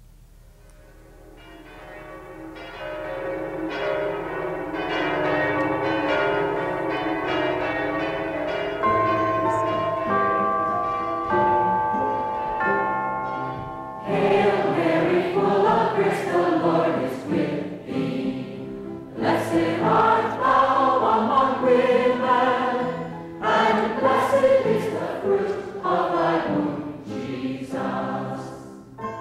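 Choral music: a slow instrumental introduction of held notes fades in, and voices enter singing about halfway through, with a marked vibrato.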